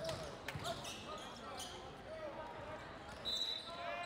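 Volleyball gym ambience: chatter of players and spectators and balls bouncing on the court. Near the end comes a short, high referee's whistle signalling the serve.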